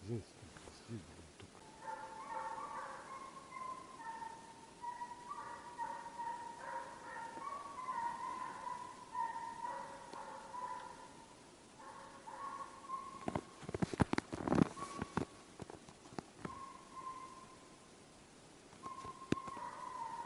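A pack of Russian hounds baying in the distance while running a hare: a long chain of drawn-out, pitched calls that breaks off around twelve seconds in and picks up again around sixteen seconds. A burst of close knocks and rustles about fourteen seconds in is the loudest sound.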